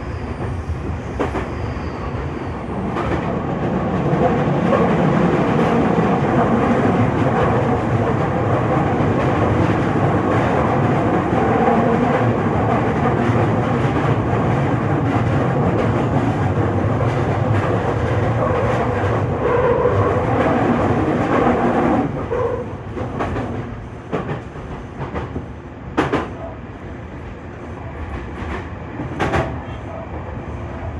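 Toei Mita Line 6500 series train running, heard from inside its front car: steady rolling and motor noise that grows louder a few seconds in and eases off after about twenty-two seconds. Near the end come a few sharp clacks of wheels over rail joints.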